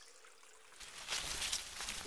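Rain fading in about a second in and going on as a steady hiss of falling rain.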